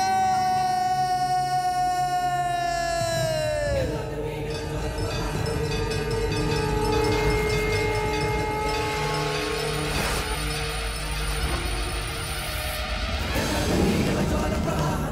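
A man's long, high-pitched yell, held for about four seconds and sliding down in pitch as it dies away. Dramatic film background music then runs on with a held note and a low pulse, and a single sharp hit comes about ten seconds in.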